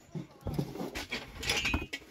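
A white storage box being slid out of a shelf compartment by hand, with irregular scraping and several knocks against the shelf, busiest in the second half.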